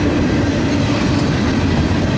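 Double-stack container well cars of a freight train rolling past at close range: a steady rumble of steel wheels on rail.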